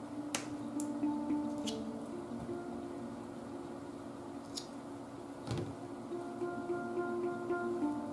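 Soft background music with steady held notes, with several sharp scissor snips as ribbon ends are trimmed, spaced unevenly through the first half and more.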